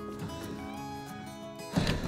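Background music with steady held notes. A short burst of noise comes near the end.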